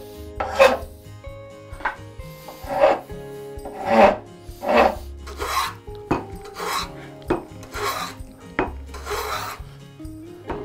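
Hand tools working hardwood. First a few short file strokes rasp across the top of a walnut block, then a hand plane takes longer strokes along the edge of an oak board, each pass a separate scraping hiss.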